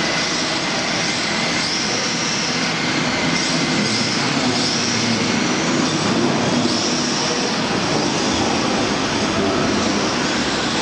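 Several radio-controlled rear-wheel-drive drift cars running together on a smooth indoor track: a steady hiss of tyres sliding, with high electric-motor whines rising and fading every second or so as the cars accelerate through the corners.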